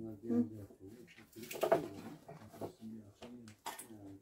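Indistinct, low voices talking in a small room.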